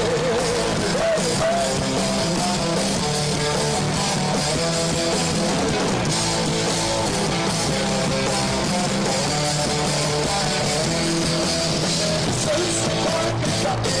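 A live metal band playing. A distorted electric guitar leads with bent, wavering notes over bass and drums.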